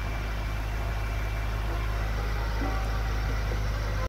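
BMW F10 M5's twin-turbo V8 idling with a steady low hum.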